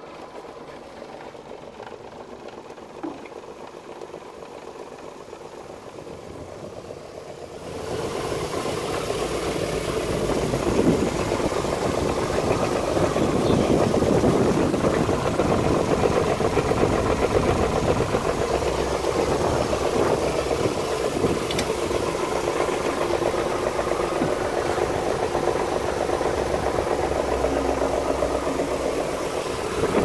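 Stainless-steel vibratory screener running while sifting breadcrumbs: a steady mechanical running noise from its vibrating deck and motor, which steps up sharply louder about eight seconds in and then holds steady.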